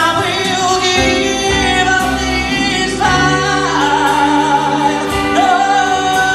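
Male singer holding long, gliding sung notes over a live band's accompaniment, with soft beats about once a second.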